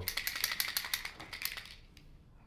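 Pages of a spiral-bound calendar being flipped shut: a quick run of rapid papery clicks that fades out near the end.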